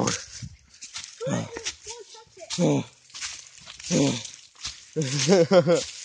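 Several short bursts of a person's voice without clear words, the longest near the end, between footsteps crunching through dry leaf litter.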